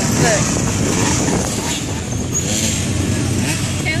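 Dirt bike and ATV engines running at low speed as the vehicles roll slowly past in a line, a steady mixed rumble.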